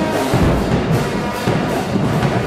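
A marching band playing loudly: trumpets, trombones and sousaphones over a steady beat from snare and bass drums.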